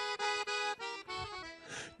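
Accordion playing softly alone, a short phrase of held notes and chords that change every quarter to half second.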